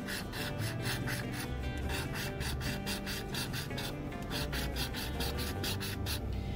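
A coin scraping the scratch-off coating off a paper lottery ticket in quick, repeated strokes, several a second, over background music.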